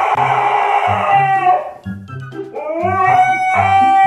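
Husky howling: two long, drawn-out howls, each rising in pitch and then holding steady, with a short break between them about two seconds in. Background music with a steady beat plays underneath.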